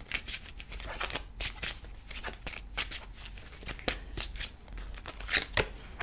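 A deck of oracle cards being shuffled and handled by hand: many quick, irregular card clicks and snaps.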